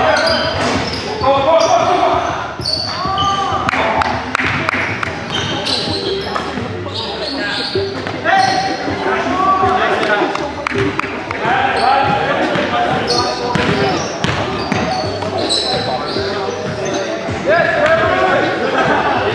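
Live basketball game sounds in a gymnasium: the ball bouncing on the hardwood court in irregular knocks, along with short high sneaker squeaks and players' calls, all echoing in the hall.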